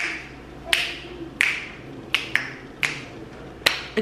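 Finger snaps, about seven of them in a loose rhythm, each a sharp click with a short ring in a small room.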